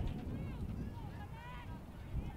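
Several players' voices calling out across a lacrosse field, distant and overlapping, over a low rumble.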